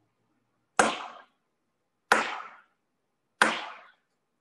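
Three strikes of a gavel on a desk, about a second and a quarter apart, each with a short ringing decay: the chair gaveling the hearing to order.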